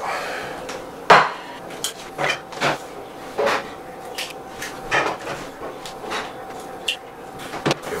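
A run of short, sharp kitchen knocks and taps: a plate set down hard on the counter about a second in (the loudest), then eggs tapped and cracked on the rim of a frying pan, with small clatters of the pan and utensils.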